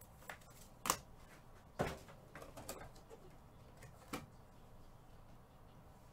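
Gloved hands handling a trading-card box and its cards: scattered soft clicks and rustles, with sharper clicks about one and two seconds in and again near four seconds.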